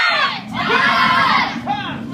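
A class of children shouting kihaps together as they punch and kick: one long group shout lasting about a second, then a run of shorter, sharper shouts near the end.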